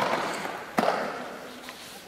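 Two sharp slaps, about three quarters of a second apart, each trailing off in a short rustle: hands and body landing on foam floor mats.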